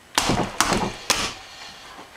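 Folding bicycle pedals being folded up by hand: a clattering knock, then two sharp clicks about half a second apart.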